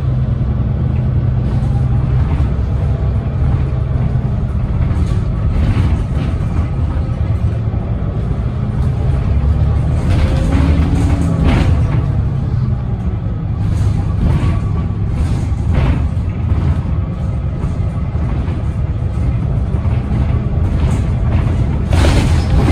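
Cabin sound of a 2010 Gillig Low Floor hybrid transit bus under way: the Cummins ISB6.7 diesel and Allison hybrid drive give a steady low hum with a whine that glides up and back down about halfway through. Scattered rattles and knocks come from the bus body.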